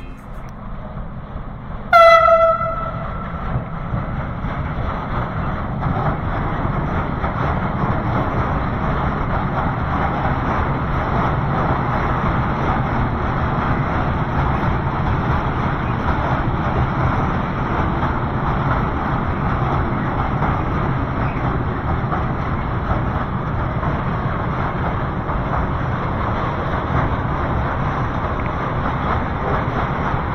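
ČD class 151 electric locomotive giving one short horn toot about two seconds in, then a steady rumble as it slowly draws its train nearer, growing a little louder over the first few seconds.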